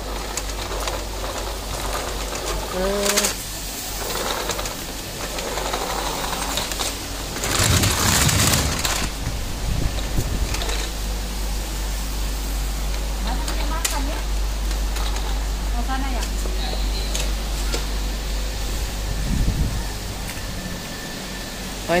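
Shop ambience: a steady low hum with faint voices in the background, and a louder rustling burst lasting about a second and a half, about eight seconds in.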